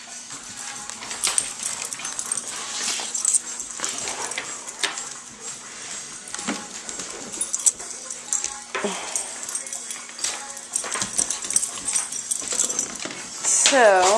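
Several dogs milling and jostling on a hardwood floor: scattered clicks and jingles of collar tags, a leash clip and claws, with a few brief dog vocal sounds.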